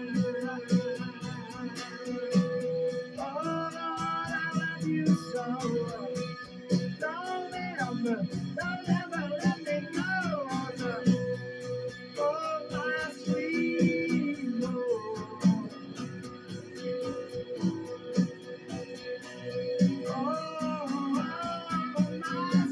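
A man singing to his own steadily strummed acoustic guitar, the voice coming in phrases with sliding notes over an even strum.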